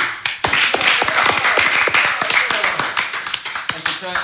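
A few people clapping together in a small room, the claps dense and uneven, with voices mixed in.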